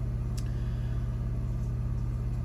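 Steady low background hum, with one faint click about half a second in.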